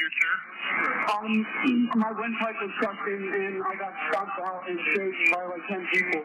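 Speech only: a recorded emergency call, with the operator and a young man talking over a telephone line that makes the voices sound thin.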